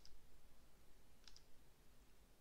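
Near silence with two faint, sharp double clicks, one at the start and another just over a second later.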